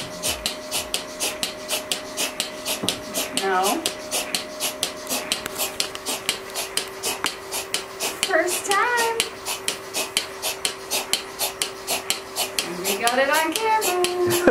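Milking machine running on a cow: the pulsator clicks in a rapid, even rhythm over a steady vacuum hum. A person makes a few short vocal sounds now and then.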